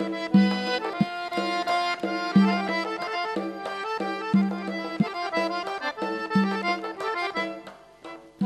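Khorezmian folk tune played on a button accordion with a doira frame drum: the accordion's melody and chords run over a deep drum stroke about every two seconds, with lighter strikes between.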